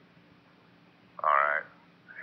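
Two-way railroad radio channel with a faint hiss and low hum, then, about a second in, a brief half-second burst of a man's voice through the narrow-band radio, a single word or syllable.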